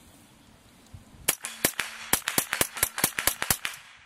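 Ruger 10/22 semi-automatic .22 LR rifle fired rapidly, a string of about fifteen sharp shots at roughly five to six a second, starting about a second in and stopping shortly before the end.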